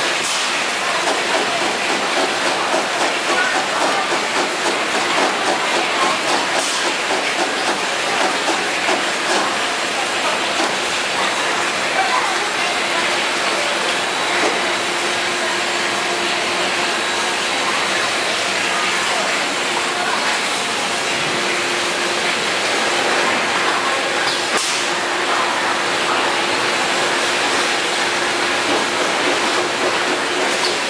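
Automatic bottle capping and filling line running: plastic bottles clattering along the conveyors over a loud, steady mechanical din, with a couple of sharper clicks.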